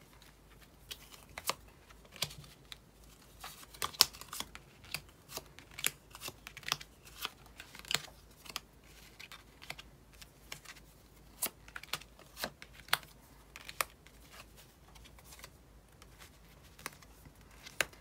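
Tarot and oracle cards being drawn from a deck and laid out one by one on a cloth-covered table: an irregular run of sharp card clicks and snaps, roughly one or two a second, with the loudest about four seconds in.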